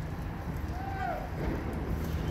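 Steady low outdoor rumble, with a single short call that rises and then falls in pitch about a second in.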